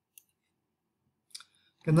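A few faint computer mouse clicks: one just after the start and a quick pair about a second and a half in, followed by a man saying "Okay".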